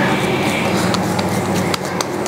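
Potato dough being pressed flat between oiled palms, heard only as a few soft clicks over a steady background noise.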